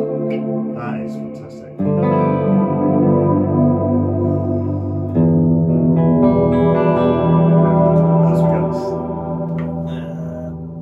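Duesenberg Starplayer TV electric guitar playing chords through the M-Vave Mini Universe reverb pedal on its cloud setting, each chord spreading into a long, cloudy, dreamy wash of reverb. New chords are struck about two seconds in and again about five seconds in, and the sound slowly fades toward the end.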